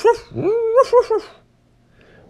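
A dog whining in two high calls: a short rising one, then a longer one that climbs, holds and wavers before stopping.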